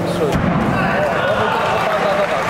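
A single heavy thud about a third of a second in as a grappling fighter's body hits the cage mat during a scramble, with shouting from the crowd and corners running on.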